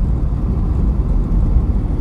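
Steady deep rumble of a car driving along a highway, engine and tyre noise heard from inside the cabin.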